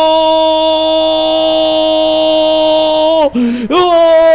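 Radio football commentator's long drawn-out 'goool' goal shout: one loud note held at a steady pitch. About three seconds in it breaks off for a quick breath, then a second long held note begins.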